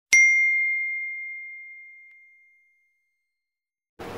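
A single bell ding, struck once about a tenth of a second in, a clear high ring that fades away over about two and a half seconds.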